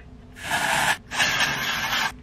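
Aerosol hair texture spray being sprayed onto hair in two long hissing bursts, the second starting just after the first stops.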